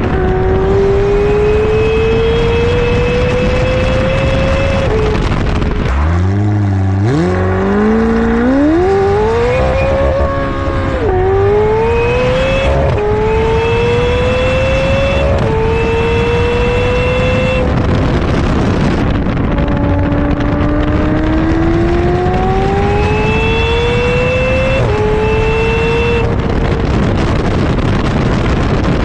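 McLaren twin-turbo V8 under hard acceleration: the revs climb through gear after gear, with a sudden drop in pitch at each upshift. Around a quarter of the way in, the note falls low and then climbs steeply again. A faint high whine rides over the engine during several of the pulls.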